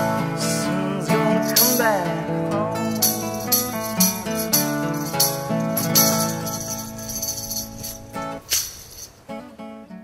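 Acoustic guitar strumming chords with a tambourine shaken in time, the instrumental close of a song. The playing thins out and fades, with the last few strums ringing out near the end.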